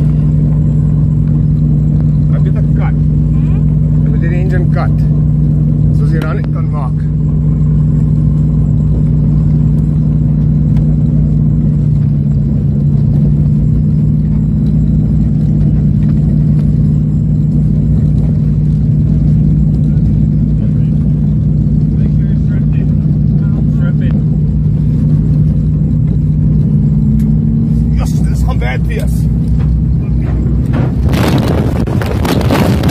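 Steady drone of an aircraft's engines heard from inside the passenger cabin, its pitch shifting slightly about twelve seconds in, while one engine is burning and trailing smoke. Short bursts of voices come about four to seven seconds in and again near the end.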